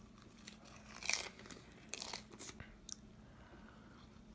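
A man biting into and chewing a deep-fried avocado slice, with a few faint crunches, the loudest about a second in.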